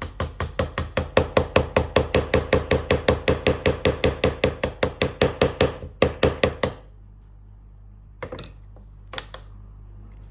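Toy plastic hammer rapidly tapping a plastic chisel into a chalky dinosaur-egg dig kit to chip it open, about five even taps a second, stopping about seven seconds in. Two brief softer noises follow near the end.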